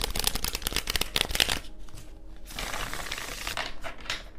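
A deck of tarot cards shuffled by hand: a fast run of crisp card clicks for the first second and a half, then softer sliding and rustling of the cards.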